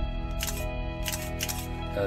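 Background music, with a few short sharp clicks from a Canon EOS 350D DSLR camera being handled and operated during its post-repair check.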